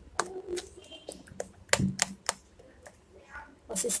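Metal spoon clicking against the side of a glass bowl as thick besan batter is beaten: a run of irregular sharp clicks, a few a second.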